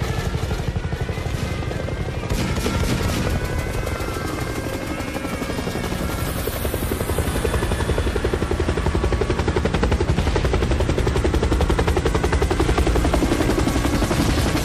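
Helicopter sound effect played over the venue's sound system: a rapid, steady rotor chop over a deep rumble, growing a little louder toward the end, with the song's music underneath.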